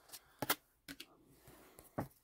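Cardboard trading cards being handled: a handful of short, light clicks and flicks as cards are tapped and set down.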